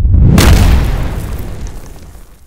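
Cinematic boom sound effect: a low rumble swells into a sharp hit about a third of a second in, which dies away over a couple of seconds.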